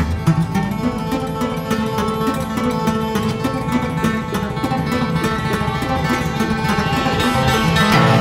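Instrumental music: a fast, steady run of plucked guitar notes over lower sustained tones, growing gradually louder toward the end.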